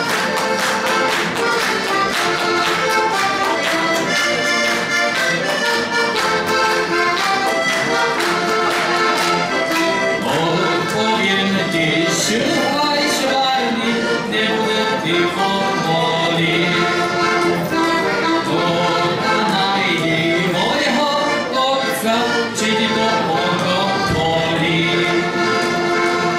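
Slovak heligonka, a diatonic button accordion, playing a traditional folk tune, with melody notes over a continuous rhythmic accompaniment.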